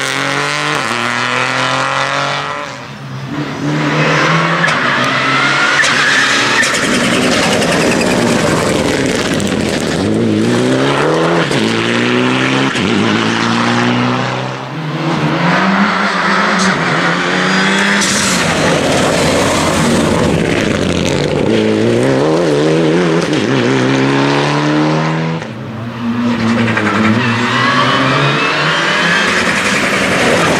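Rally cars driven hard one after another, among them a Peugeot 208 and Mitsubishi Lancer Evolutions with turbocharged four-cylinder engines: engines climbing in pitch under full throttle and dropping at each gear change or lift for a bend. There are three short breaks, about three seconds in, near the middle and a few seconds before the end, where one car gives way to the next.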